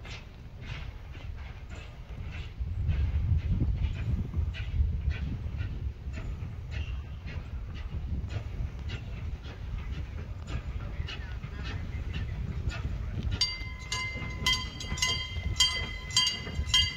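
John Molson steam locomotive working slowly along the track, its exhaust chuffing steadily about twice a second over a low rumble. About thirteen seconds in, a bell starts ringing in repeated strokes.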